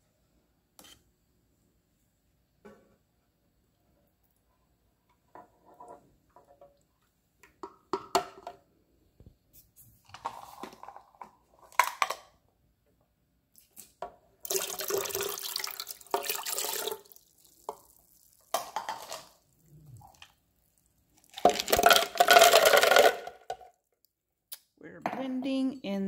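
Kitchen prep sounds: scattered knocks and clinks of cups and jug, then water poured from a cup into a plastic blender jar for a couple of seconds. Later, louder, ice cubes tumble into the jar for about a second and a half.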